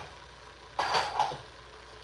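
A brief rattle of metal kitchen utensils about a second in, as a can opener is taken from among them, over a faint steady low hum.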